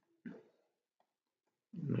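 A man's brief throaty vocal sound about a quarter second in, against near silence; he starts speaking near the end.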